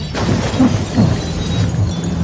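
Glass and debris shattering and crashing in a continuous rush of breaking sounds, with steady low notes sounding beneath.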